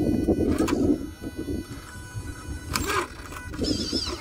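Radio-controlled scale rock crawler's electric motor and gearbox whining in short bursts as it crawls over rock, loudest in the first second. A brief warbling high whistle comes near the end.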